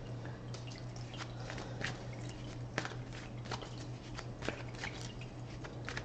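Tabletop water fountain trickling, with irregular drips a few times a second over a steady low hum.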